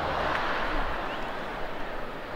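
Stadium crowd ambience: the even murmur of a large crowd, easing slightly.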